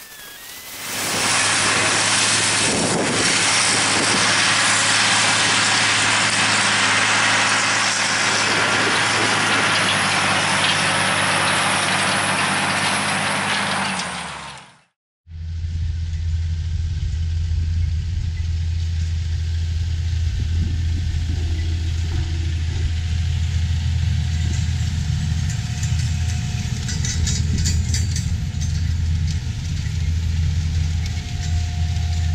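Tractor engine running steadily, at first under a loud rushing noise typical of wind on the microphone. After a break about 15 seconds in, it becomes a strong, even low drone of a diesel tractor engine under load.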